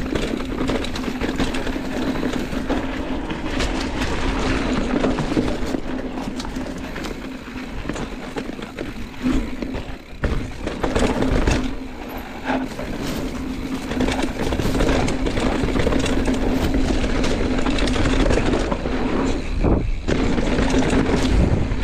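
Santa Cruz Megatower enduro mountain bike riding down a dirt trail: tyres rolling over dirt and rocks, wind on the microphone, and knocks and rattles from the bike over bumps. A steady low hum runs under it, with a brief dip in level about ten seconds in.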